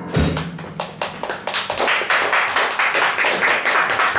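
A jazz band's last sharp hit just as it starts, then a small audience clapping.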